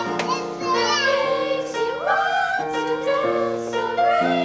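Children's choir singing a jazz song: wavering solo voices over held chords that change about every second.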